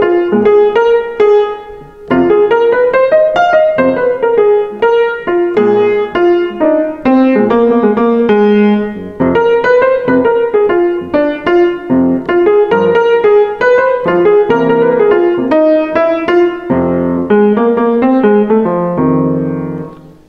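Grand piano playing a chorus of jazz blues: a right-hand line built on the blues scale with flat third, fourth, sharp eleventh, fifth and flat seventh, over left-hand chords. There is a short break about two seconds in, and the chorus ends on a held chord just before the end.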